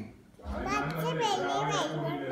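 A toddler talking in a high voice, a brief pause and then a run of chatter from about half a second in.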